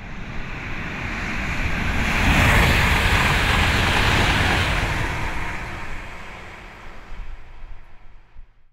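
A rushing noise swells over about three seconds, holds, then fades away, with a few crackling pops near the end.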